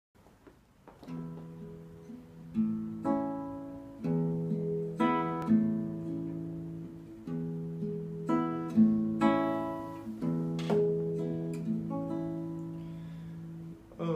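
Nylon-string classical guitar playing a slow solo introduction. It starts about a second in, with plucked chords and single notes over a low bass note restruck about every three seconds.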